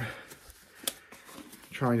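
Grip Protect Precise black nitrile disposable glove rustling as it is stretched and pulled onto a hand, with a short sharp click about a second in.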